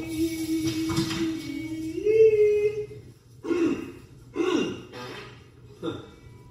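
A person humming one long held note that steps up in pitch about two seconds in, then two short sliding vocal sounds.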